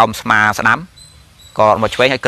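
A man speaking Khmer in a Buddhist Dharma talk, with a short pause about a second in. During the pause a faint, high, steady tone can be heard.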